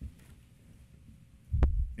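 A faint steady hum in a quiet room, a small low knock at the start, then a loud low thud with a sharp click about one and a half seconds in, the kind a table microphone picks up when it is bumped or handled.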